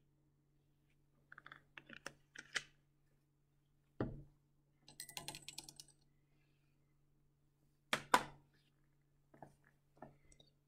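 Scattered clinks and knocks of lab glassware being handled while a burette is refilled: a few light clicks early, a sharper knock about four seconds in followed by a short rattle of small clicks, and a double knock near eight seconds.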